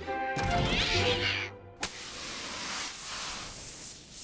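Cartoon sound effect of sand being dug and thrown: light background music at first, then a sharp tick a little before two seconds in, followed by a steady rushing spray of sand.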